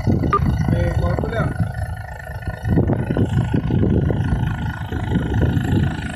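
A small boat under way on a canal: a dense, uneven low rumble of wind buffeting the microphone over the boat's running noise, with brief faint voices.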